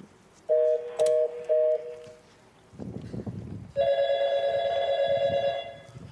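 Telephone sound effects. There are three short two-tone beeps as a number is dialled, and from about halfway in a phone rings steadily for about two seconds as the call goes through.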